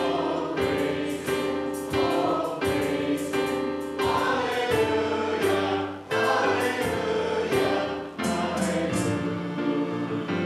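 A hymn sung by a choir of voices with instrumental accompaniment, the instrument sounding a new chord about every second.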